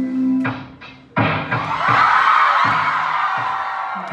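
Live band music heard from the audience. A held keyboard drone drops away, then about a second in the band comes in suddenly and loud with drums and guitars, mixed with cheers and whoops from the crowd.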